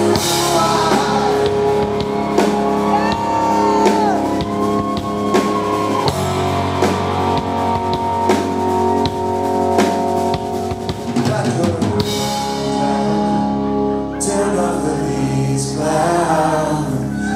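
Live rock band playing an instrumental passage: electric guitar holding long notes, some bent up and down, over drums. Singing comes back in near the end.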